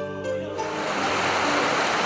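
Background music with held notes. About half a second in, the rush of a fast, shallow mountain river running over rocks comes in and carries on steadily beneath the music.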